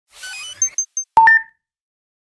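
Garmin VIRB intro logo sting, an electronic sound effect. A quick run of high blips with a rising sweep comes first, then three short, very high pings. About a second in there is a sharp click with a bright ringing tone that dies away within half a second.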